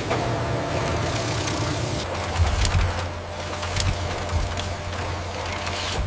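Industrial machinery noise: a steady low hum under a hiss, with a few low thumps from about two seconds in.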